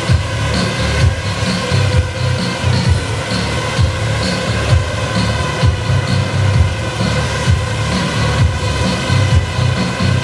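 Loud music with a heavy, steady beat, over the constant whine of a swarm of small drones' propellers hovering and flying together.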